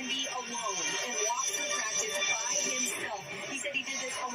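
Television broadcast sound heard through a TV speaker: background music with a voice talking over it.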